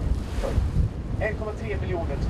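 Wind buffeting the microphone in uneven gusts, giving a low rumble, with faint voices behind it.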